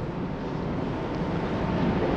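Steady rushing background noise in a large hall, with no speech.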